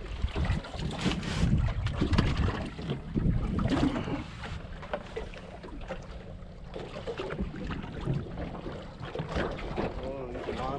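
Wind buffeting the microphone and water lapping against a small aluminium boat's hull, with scattered small clicks and rustles from hands rigging a jig with a soft-plastic bait.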